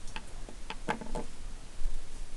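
A few light, irregularly spaced clicks and taps over a steady low hum, with the last two close together about a second in.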